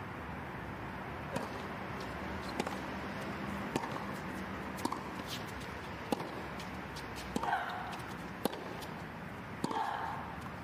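Tennis rally: a ball struck back and forth by rackets, a sharp pock about every second, eight hits in all. A player grunts briefly on some of the shots.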